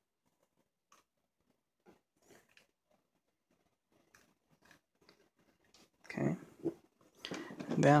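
Very quiet handling: a few faint, scattered taps and clicks from wooden popsicle sticks and a hot glue gun being held and set down on the work surface. A man's voice comes in near the end.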